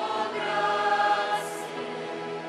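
A choir singing a slow hymn in long, held chords.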